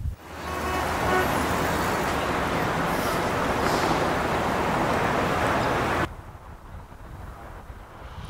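Steady city street traffic noise, a dense wash of passing vehicles, which cuts off abruptly about six seconds in to a much quieter background.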